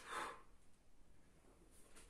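A single short, sharp exhale at the very start, from a man exerting himself as he turns from side plank back into push-up position.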